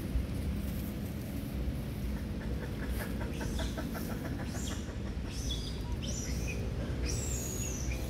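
Bird calls over a steady low rumble: a quick run of clucks, about eight a second, then several short high chirps, the last one falling in pitch near the end.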